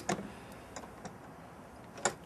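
A few light clicks and taps from the air bottle and its strap being handled, the loudest at the very start, then faint scattered ticks over quiet room tone.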